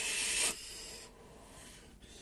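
A breathy rush of air from a vape hit, loud for about half a second and then trailing off into a fainter hiss that dies away about a second in.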